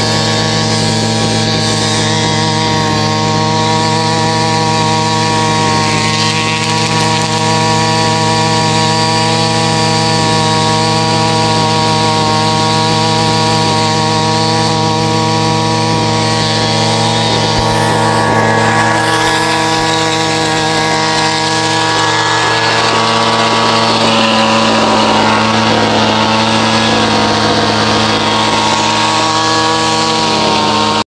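Echo two-stroke string trimmer engine running steadily at high speed with the throttle trigger released. It will not drop back to idle and keeps the head spinning, as if the trigger were pulled.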